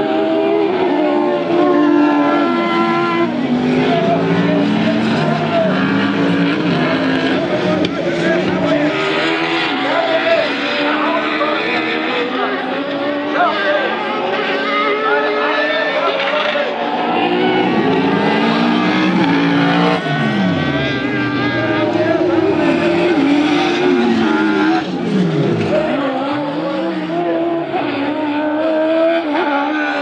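Several Spezialcross autocross buggies with over-1800 cc engines racing together on a dirt track, their engines revving up and down through gear changes, with falling pitch as cars sweep past. Tyres and thrown dirt add a steady noise under the engines.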